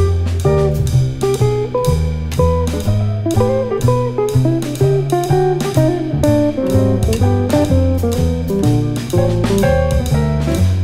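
Jazz quartet of guitar, piano, double bass and drums playing a blues. A single-note lead line runs over a walking bass that changes note about twice a second, with steady cymbal time.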